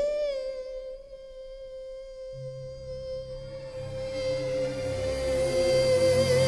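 A female jazz singer's voice sliding up into one long held note, steady at first and then with vibrato near the end, while low orchestral accompaniment comes in softly about two seconds in.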